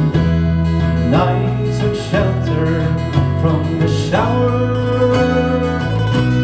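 Irish folk band playing live: strummed acoustic guitar, mandolin and bass guitar, with a melody line that slides up into its notes twice.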